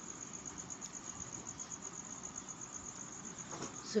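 A cricket chirping steadily: an even, high-pitched pulse about nine times a second over faint hiss.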